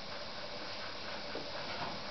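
Steady low hiss of background noise, with no distinct sound event.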